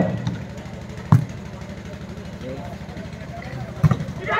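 A volleyball struck twice during a rally, a sharp slap about a second in and another near the end, over a steady low hum and faint crowd voices.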